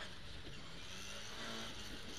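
Ford Escort RS2000 rally car's engine running at a steady pitch under way, heard from inside the cabin.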